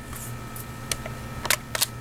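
A few light clicks over a faint steady hum, three of them close together near the end.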